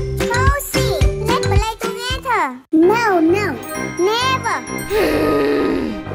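Bouncy children's cartoon music with tinkly mallet notes, which cuts out abruptly about two and a half seconds in. It then gives way to high-pitched wordless cartoon character voices sliding up and down in pitch over a steady beat, ending in a raspy falling grunt.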